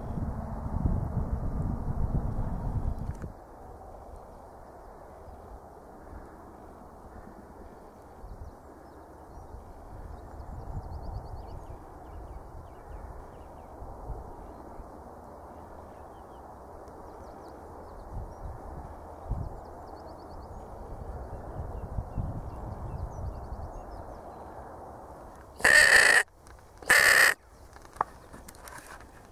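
A low rumble for the first three seconds, then a faint steady outdoor hush. Near the end come two loud, harsh crow caws about a second apart.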